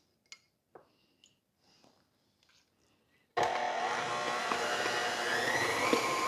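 A few faint clinks from a spoon in a small bowl, then about three and a half seconds in an electric stand mixer starts and runs steadily, beating cream cheese frosting that has just had a little more milk added to thin it. The motor's whine rises slightly as it runs.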